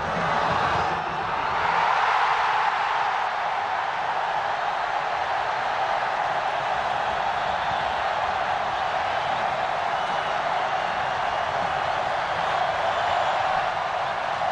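Stadium crowd cheering a goal: a steady, dense wash of voices that swells slightly about two seconds in.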